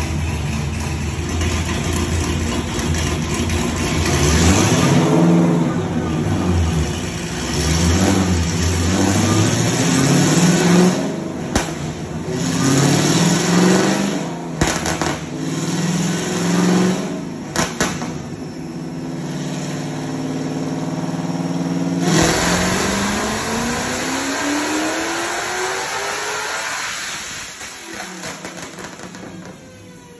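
Dodge Challenger Hellcat's supercharged 6.2-litre Hemi V8, fitted with a 4.5-litre Whipple supercharger, running hard on a chassis dyno. Its pitch climbs and drops several times, broken by several sharp cracks, then makes one long climb from about two-thirds in and tails off near the end. The engine is breaking up near the top of the pull, around 6,400 rpm.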